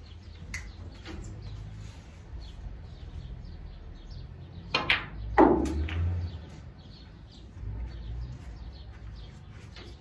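Snooker balls: a sharp click of the cue tip on the cue ball, then about half a second later a louder click as the cue ball strikes the black, followed by a brief low rumble.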